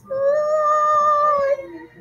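A single high voice singing one long, steady high note for about a second and a half, then a short lower note near the end.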